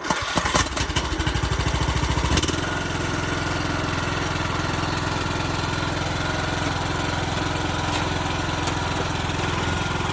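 Troy-Bilt riding lawn mower's engine starting: it catches right at the start, runs louder for about two and a half seconds, then settles into a steady idle.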